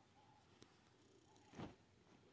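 Near silence, with a brief soft rustle of clothing being handled close to the phone about one and a half seconds in.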